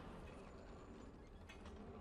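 Near silence: the echoing tail of a stage spotlight's switch-on clunk dying away, then a few faint clicks about one and a half seconds in.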